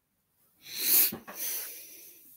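A person's sudden, loud breath noise, with no spoken words. It builds over about half a second to a sharp burst about a second in, then trails off.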